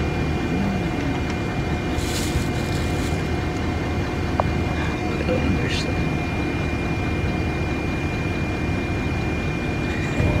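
Steady low rumble of a bus heard from inside the passenger cabin, with a thin steady whine over it. About two seconds in comes a brief crinkle of a plastic bag, and a single small click follows a couple of seconds later.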